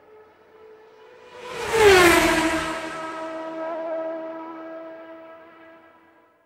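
Outro music sting: a soft held chord swells into a loud whoosh about a second and a half in, its pitch sliding down and settling into a lower held chord that fades out near the end.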